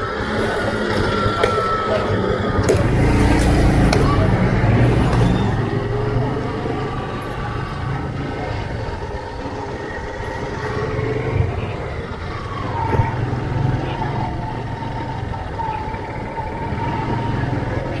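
Motorcycle engine running as it is ridden along a rough street, mixed with wind on the microphone and street traffic, louder a few seconds in.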